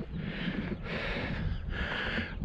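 A hiker breathing heavily through the mouth after a short uphill climb, three breaths about a second apart, with a low wind rumble on the microphone.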